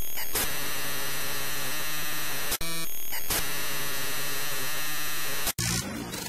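Loud electronic static-noise sound effect, a glitch-style hiss with steady high tones running through it. It drops out for an instant near the middle, changes briefly, and cuts off abruptly shortly before the end, where a quieter different sound takes over.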